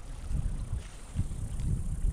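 Wind buffeting the microphone in low, irregular rumbles that swell and fade several times.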